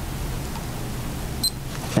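Handheld blood glucose meter (TEST N'GO Advance Pro) giving one short, high beep about one and a half seconds in, the signal that it has taken up the sample on the test strip and started its countdown, over a steady background hiss.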